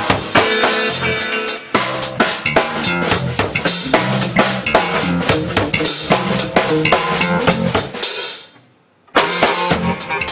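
Live jazz-funk trio groove: drum kit with steady kick, snare and rimshots, a six-string electric bass line and hollow-body archtop electric guitar. Near the end the music dies away for about a second, then the band comes back in.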